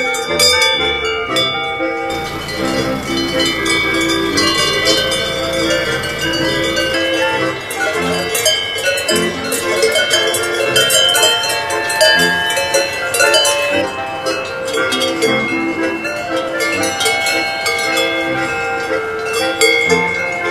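Swiss folk (Ländler) music with sustained accordion-like chords, with cowbells ringing over it.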